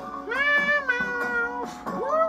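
A long, drawn-out meow voiced for a cat puppet, rising then falling in pitch, with a second meow starting near the end, over background music.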